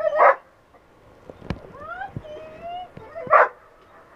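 A search dog barking twice, about three seconds apart, with high rising whines between the barks and a sharp knock midway.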